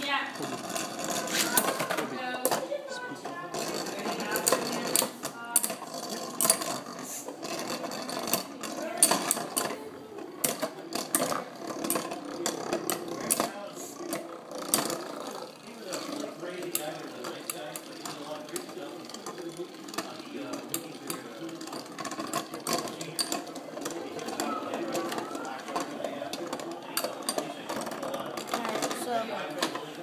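Metal Beyblade spinning tops whirring and rattling in a plastic stadium, with many sharp clicks as they strike each other and the stadium walls.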